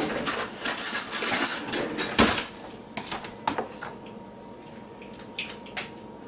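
Eggs being cracked and handled at a plastic mixing bowl: some rustling, one sharp knock about two seconds in, then a few light clicks.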